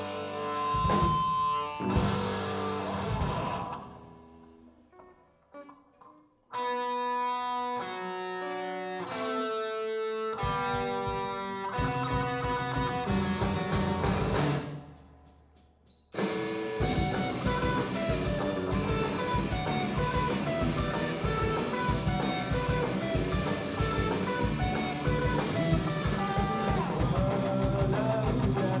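A rock band playing live on electric guitars, bass and drum kit. The band's playing dies away in the first few seconds; a guitar then picks out clear single notes on its own, other parts join it, it stops short, and the full band with drums comes back in.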